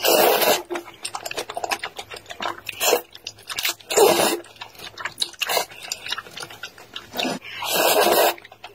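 Close-miked slurping of wide flat noodles in thick chili sauce: loud slurps at the start, about four seconds in and near the end, with wet chewing clicks and smacks between.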